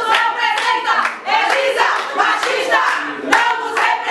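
A group of women chanting in unison, with hands clapping along.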